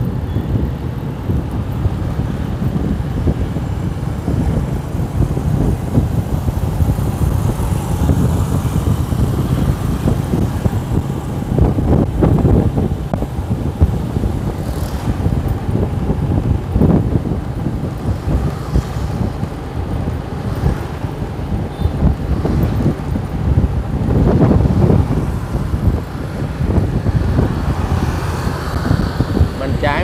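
Wind buffeting the microphone over the low drone of road and engine noise while riding through light street traffic, with a few louder swells as nearby vehicles pass.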